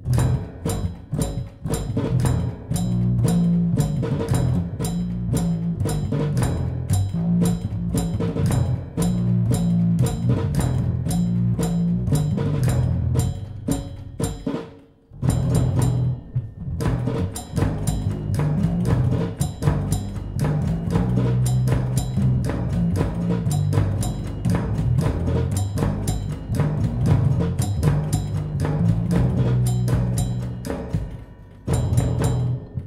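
Mechanical, MIDI-driven band with a newly added mechanical bass playing a tango: machine-struck drums keep a steady rhythm over a moving bass line. The music stops briefly about halfway through, then starts again.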